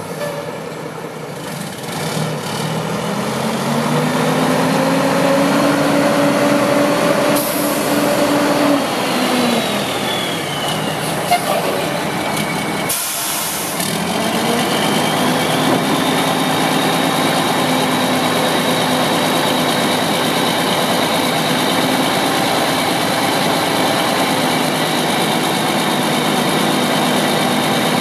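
2002 Mack RD688S dump truck's diesel engine pulling away: its pitch rises over the first few seconds, holds, then falls away about nine seconds in. A short hiss comes around thirteen seconds in, and after that the engine runs steadily.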